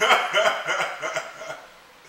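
Loud laughter from two men, a run of quick bursts that dies away about a second and a half in.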